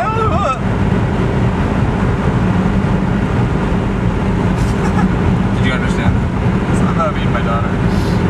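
Steady road and engine noise heard from inside a car's cabin while driving at highway speed, mostly a low, even hum.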